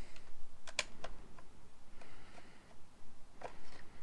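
Light plastic clicks and knocks from turning the knob and lifting the plastic top cover off a Stihl 025 chainsaw: about six separate clicks, the sharpest a little under a second in.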